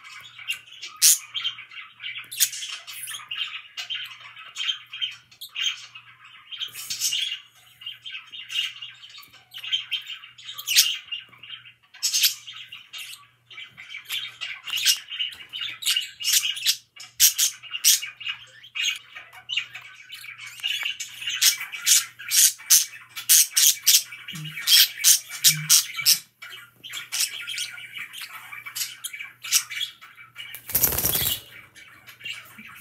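Budgerigars warbling and chattering steadily, with a constant stream of sharp chirps and squawks that grows busier in the last third.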